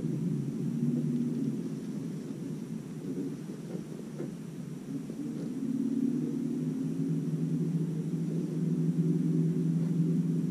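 Steady low hum of a boat's electric trolling motor, dipping in level a couple of seconds in and growing stronger again about six seconds in as its pitch shifts.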